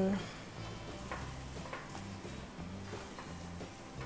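Quiet background music with a low, slowly changing bass line, over a few soft scrapes of a spatula stirring grated apples in a frying pan.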